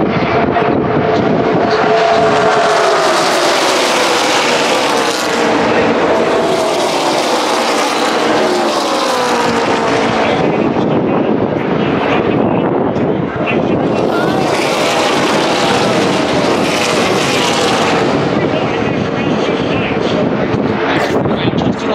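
A pack of NASCAR Xfinity Series stock cars passing at full racing speed, many V8 engines at once, their pitch sliding down as the cars go by. The sound swells in two long waves, the first as the pack passes close and the second as it carries on round the track.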